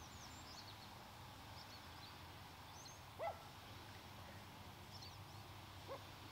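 Faint outdoor ambience of birds: scattered short, high chirps over a low steady hum, with one louder, short rising call about three seconds in.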